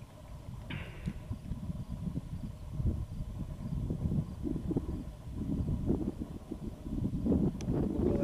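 Wind buffeting the camera microphone: a gusty low rumble that rises and falls, growing stronger in the second half.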